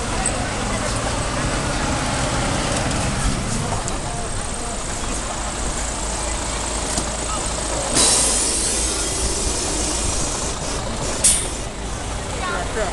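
City bus running close by, with a sudden hiss of air from its air brakes about eight seconds in, and a brief sharp burst of noise near the end.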